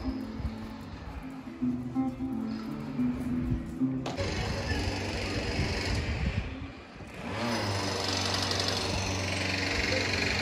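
Acoustic guitar played by a street musician, a melody of plucked notes. About four seconds in it cuts off abruptly, and a steady rushing street noise follows, with a low hum added near the end.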